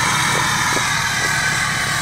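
Pickup truck engine idling steadily under a continuous hiss.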